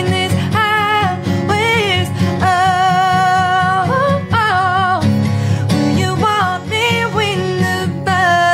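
A country song sung live to acoustic guitar, the singer holding long, wavering notes, one held for over a second near the middle.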